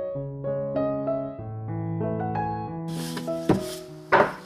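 Gentle solo piano music with slow, steady notes. Near the end the room sound comes in, with one sharp knock on a wooden board.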